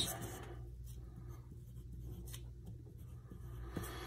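Faint scratching of a pen writing on paper, with a few light ticks over a low steady hum.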